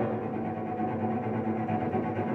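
Cello and piano playing softly: a held, bowed cello note, with the piano's sound dying away.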